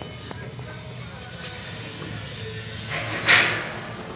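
Gas burner of a noodle boiler lighting with one short, loud whoosh about three seconds in, over a low steady hum.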